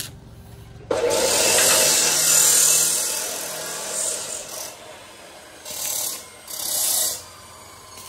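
Stick (shielded metal arc) welder arc crackling and hissing as it welds a joint in square steel tubing, one run of about three seconds that fades out. Two short bursts follow near the end as the arc is struck again at another joint.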